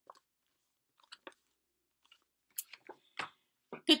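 Faint, scattered clicks and rustles of a pattern book being handled, with a cluster of louder ticks in the second half.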